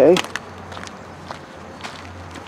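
A few light footsteps on asphalt, faint separate scuffs over a low steady hum.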